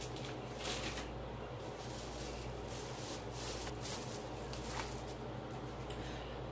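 Plastic shopping bags and food packaging rustling and crinkling as items are rummaged through and handled: an irregular string of soft crinkles over a steady low hum.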